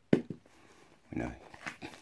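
A cigarette packet slipping from the hand and being fumbled: one sharp knock at the start, a few small taps, then a muffled bump about a second in under a spoken "No".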